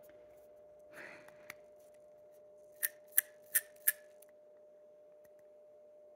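Four sharp clicks in quick succession, a little over three a second, from handling a fountain pen while refilling it, after a brief soft rustle about a second in. A faint steady hum sits under it all.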